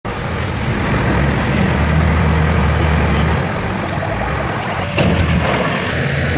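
Heavy diesel engines of a crawler bulldozer and a tipper truck running under load, a steady low hum whose note shifts about halfway through. A sharp knock comes near the end.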